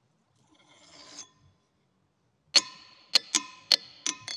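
A ringing-rock diabase boulder struck with a steel claw hammer. A faint scrape comes first, then four sharp metallic strikes from about two and a half seconds in, the last three in quick succession. Each strike leaves a sustained, bell-like ringing tone with a discernible pitch.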